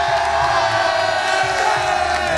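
A group of young protesters cheering and shouting together, many voices held in long overlapping cries.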